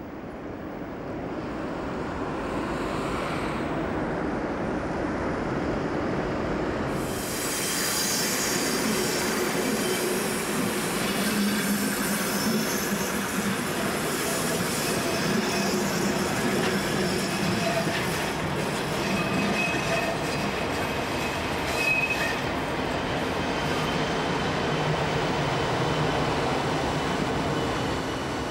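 Locomotive-hauled passenger train with a DB class 110 electric locomotive running slowly over curved track and points, wheels squealing with some clatter over the rail joints. The sound is quieter at first and becomes louder and sharper about seven seconds in, with brief high squeals near the twenty-second mark.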